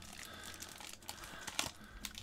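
Faint crinkling of a clear plastic bag around a screw-down card holder as it is handled, with a few light rustles and clicks.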